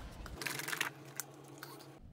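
Rubber-gloved hands handling a plastic squeeze bottle of cooktop cleaner and a terry towel: a short rustle about half a second in, then a few light clicks and taps.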